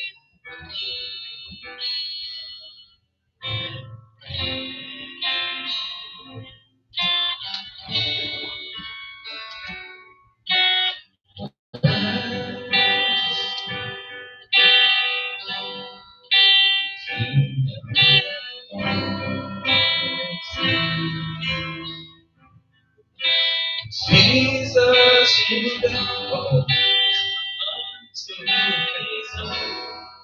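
Electric guitar playing softly picked notes and chords as worship music, in short phrases with brief pauses between them and a fuller, louder passage about two-thirds of the way in.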